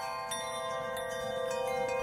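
Soft chime-like ringing tones, several pitches held steadily together like a shimmering music bed or transition effect, with a new high tone entering about a third of a second in.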